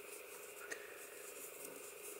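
Faint rustle of cotton yarn being drawn through by a crochet hook while a double crochet stitch is worked, with one light click about two-thirds of a second in, over a low steady hum.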